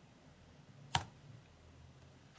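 A single sharp keystroke on a computer keyboard about a second in, over a faint low room hum.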